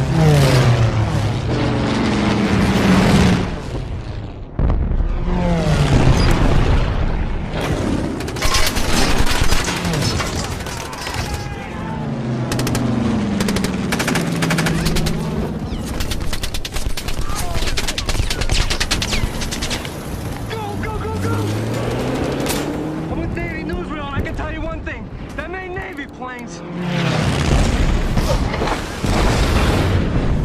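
Air-raid film soundtrack: propeller warplanes pass over several times, their engine pitch sliding down or up with each pass. Rapid machine-gun fire and booms come in a dense stretch through the middle, with shouting mixed in.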